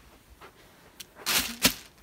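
Handling noise: a quiet stretch, then a short rustle and a sharp knock about a second and a half in, as a box and painted wood discs are moved about on plastic sheeting.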